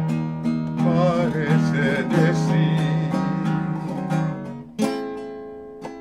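A man singing a slow ballad line with vibrato to his own nylon-string classical guitar accompaniment. Later the voice drops out and two strummed guitar chords ring out and fade near the end.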